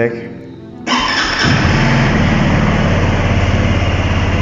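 SYM NHT200's fuel-injected, liquid-cooled single-cylinder engine starting about a second in: a brief crank, then it catches and settles into a steady idle.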